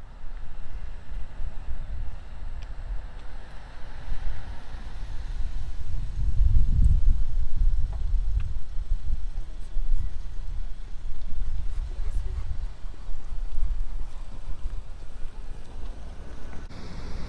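Wind buffeting the microphone of a handheld camera: an uneven low rumble that rises and falls in gusts, strongest about six to eight seconds in.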